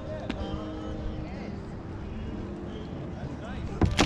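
Steady background murmur of distant voices with a low rumble across the water. Right at the end comes a sudden splash as a released bowfin drops from the lip grip into the lake.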